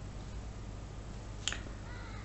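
Low steady room hum with a single short, sharp click about one and a half seconds in.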